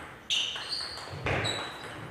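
Table tennis rally: the celluloid-type ball clicking off bats and table, with short high squeaks of players' shoes on the court floor.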